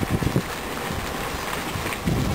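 Wind rumbling on the camera microphone in a few short gusts near the start, then a steady outdoor hiss.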